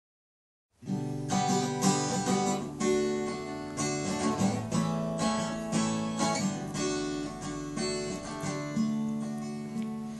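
Acoustic guitar strummed in a steady pattern of chords, about two strums a second, as an instrumental intro to a song. It starts suddenly a little under a second in, after silence.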